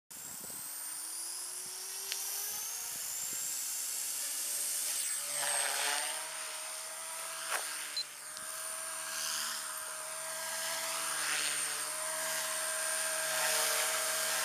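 Align T-REX 250 electric RC helicopter spooling up, its motor and rotor whine rising steadily in pitch over the first five seconds. It then flies with a steady high whine and rotor buzz that swells and fades several times as it moves about.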